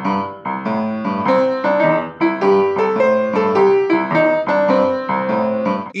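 Upright piano played with both hands: a steady, evenly repeated left-hand chord pattern, with a right-hand line of single notes stepping up and down above it, as in a beginner rock'n'roll piano exercise.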